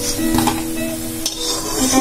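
Lentil fritters frying in shallow oil in a wok, the oil sizzling, with a metal spatula knocking and scraping against the pan a couple of times, over background music with held notes.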